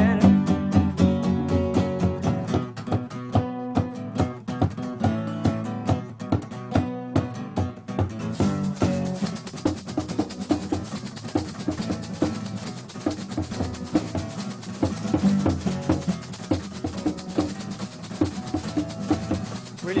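A live acoustic band plays an instrumental passage with a steady rhythmic pulse. A brighter high hiss joins about eight seconds in.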